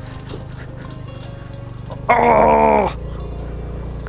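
Scooter engine running steadily under background music. About two seconds in, a single drawn-out call lasting under a second stands out above it, its pitch sinking slightly at the end.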